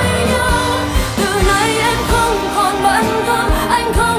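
A Vietnamese pop ballad: a female singer's voice over backing music with a recurring low drum beat.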